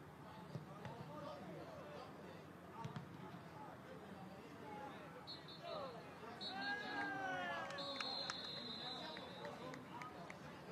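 Football players shouting across the pitch, with no crowd noise. The referee's whistle then blows three times, two short blasts and a long one, signalling full time.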